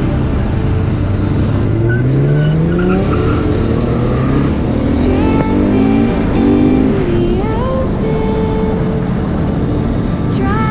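A vehicle engine accelerating hard: its pitch climbs in a long rising sweep, then rises again in shorter steps as it shifts up through the gears. Background music plays under it.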